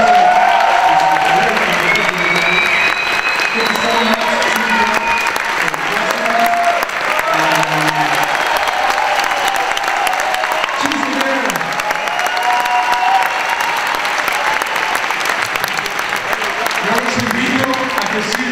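Audience applauding steadily in a large hall, with voices calling out over the clapping.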